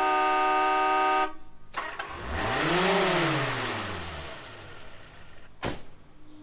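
Car sound effects off a 1968 vinyl record: a car horn held steadily for about a second, then a car engine rising and falling in pitch as it drives past, and a short burst near the end.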